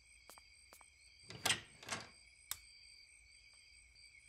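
A cartoon house door shutting with a knock about a second and a half in, followed by a softer knock and a small click. Under it, faint steady high-pitched night ambience of chirping insects.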